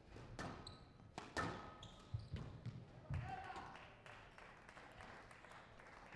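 Squash ball cracking off rackets and the court walls during a rally, several sharp hits in the first couple of seconds, with shoes squeaking on the court floor. Crowd noise then swells and fades as the rally ends.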